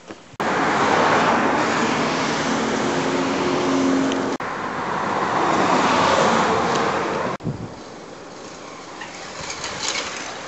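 Loud, steady road noise of a motor vehicle passing close by. It starts suddenly, breaks off for a moment around four seconds in, and cuts off suddenly a little after seven seconds, leaving quieter background.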